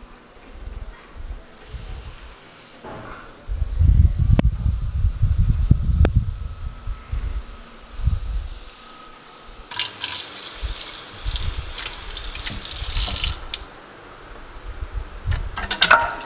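Water running from a kitchen tap into a sink for about four seconds in the middle, after low rumbling earlier on. Near the end, dishes and cutlery clink against each other in the sink as they are washed.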